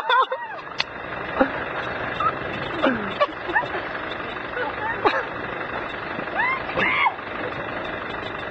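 A Suzuki 4x4's engine running steadily as it keeps driving off-road with grip. Short high sounds that slide up and down in pitch come over it about half a dozen times.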